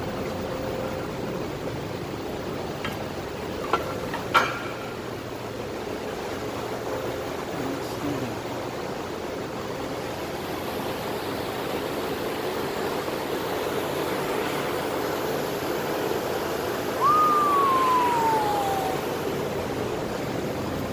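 Steady, even background noise of a large factory building, with a couple of sharp knocks about four seconds in. Near the end a single clear tone slides downward for about two seconds, louder than the rest.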